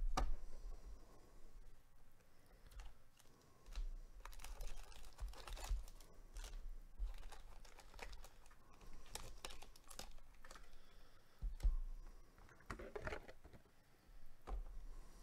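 Cardboard trading-card hobby box being opened and its foil-wrapped card packs lifted out and handled: irregular crinkling of foil wrappers and rustling cardboard, with a few knocks against the table, the loudest right at the start.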